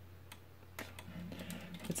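Faint small clicks and taps of plastic and metal parts as a transforming robot action figure is handled and a metal neck piece is pushed into place: a few scattered clicks, closer together near the end.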